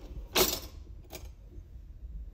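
Metal cutlery rattling in a drawer's wire basket as a fork is picked out: a short rattle about half a second in, then a single clink a little later.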